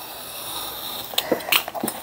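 Paper being handled on a cutting mat: a steady, scratchy rustle of a book page for about a second, then a few light taps and clicks.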